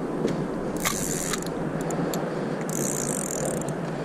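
Fishing reel worked by hand as line is let down to the bottom: light mechanical clicks and a couple of brief ratchet-like rattles, about a second in and again around three seconds in, over a steady rushing background noise.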